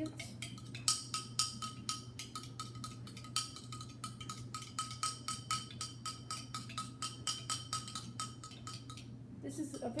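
A spoon stirring sauce in a small glass, clinking against the glass in a quick, even rhythm of about four to five clinks a second, each with a short glassy ring.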